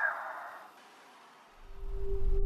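A soft hiss fades out, leaving a moment of near silence. A low rumble then swells in near the end: the start of a logo sting's sound effect.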